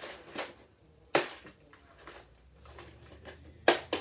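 A few sharp clicks and knocks from small objects being handled: a loud one about a second in and two close together near the end.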